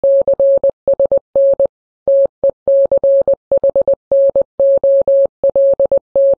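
Morse code sent as a single steady tone of about 600 Hz, keyed in short dots and longer dashes, spelling out "CSN TECHNOL…". After the first three letters there is a longer pause between the words.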